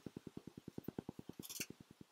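Truck cab's heater blower fan running with a fast low pulsing, about 18 pulses a second, then switched off at the heater control and spinning down near the end.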